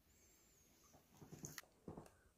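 Near silence, with a faint thin high whine in the first second, then soft taps and clicks in the second half as paper cups and clear plastic trays are handled on a table.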